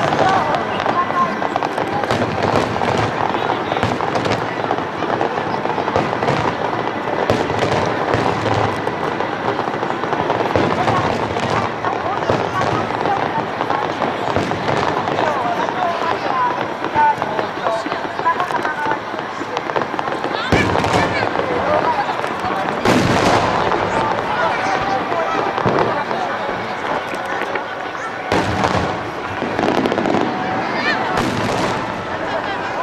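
Aerial firework shells bursting overhead in a continuous barrage of bangs and crackle, with heavier booms about 20 and 23 seconds in and again near the end.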